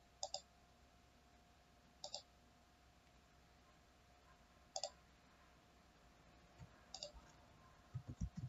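Computer mouse clicked four times, each click a quick press-and-release double tick, spaced a couple of seconds apart over a faint steady hum.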